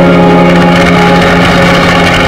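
The orchestral accompaniment holds the song's final sustained chord, steady and unchanging, as the song ends.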